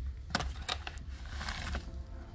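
Paper bag of blood meal being handled while a spoon scoops out the powder: a couple of sharp paper crinkles in the first second, then a short rustle about a second and a half in, over a steady low rumble.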